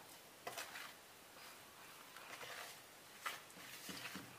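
Faint squishing of hands kneading sticky fish-and-tapioca dough in a plastic bowl, with two soft knocks, one about half a second in and one near the end.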